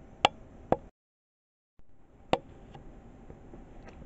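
A few light taps and knocks from a card model building being handled and turned around on a worktop: two quick knocks, a short dead gap in the sound, then one more knock.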